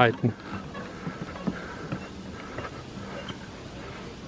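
A man's voice trailing off right at the start, then quiet outdoor background with a faint steady hum and soft scattered ticks of footsteps on the walkway.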